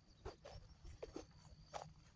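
Near silence broken by a handful of faint, scattered crunches: footsteps on dry straw and leaf mulch.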